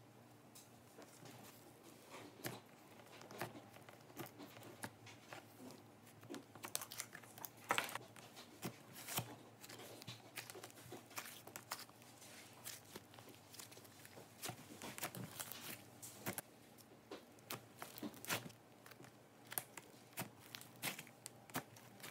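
Thick pastel slime being scooped, squeezed and stretched by hand, giving irregular soft crackles and clicks that come thickest through the middle stretch.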